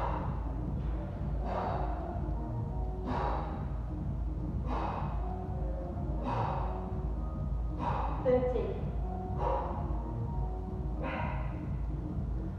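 A woman's sharp exhalations, one with each kettlebell swing, about every second and a half, over background music. A short voiced grunt comes about two-thirds of the way through.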